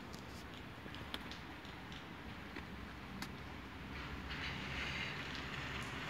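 Faint steady outdoor background noise, a low rumble with a soft hiss that swells a little in the second half, and a few light clicks.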